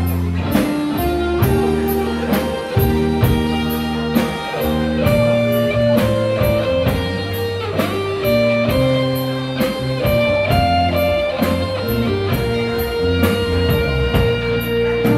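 Live band playing an instrumental passage with no singing: an electric guitar carries a slow melody of held notes over bass and a drum kit keeping a steady beat of about two strikes a second.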